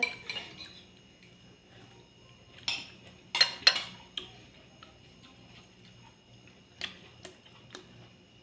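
Metal spoons clinking against ceramic plates and bowls while food is served and eaten: a handful of separate clinks, the loudest pair about three and a half seconds in, and a few lighter ones near the end.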